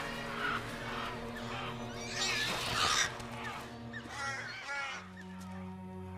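Film soundtrack music with sustained low notes. Wavering bird calls sound over it between about two and three seconds in.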